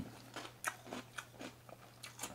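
A person chewing a mouthful of crunchy breakfast cereal with milk, close to the microphone: a run of irregular crunches, several a second.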